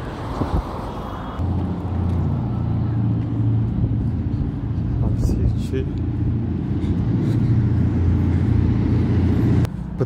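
Car engine and road noise, a steady low hum that grows louder about a second and a half in and cuts off suddenly near the end.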